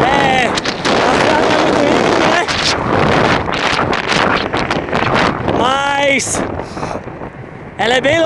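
Heavy wind rushing and buffeting over the microphone of a bicycle-mounted camera on a fast downhill run. Two brief voice-like sounds come through, one at the start and one about six seconds in, and the rush eases slightly near the end.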